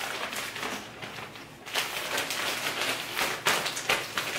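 Clear plastic clothing bag crinkling and rustling as a shirt is put back into it, a run of quick crackles that gets busier about halfway through.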